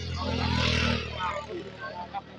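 A motor running steadily with a low hum, swelling louder for about a second near the start, with voices in the background.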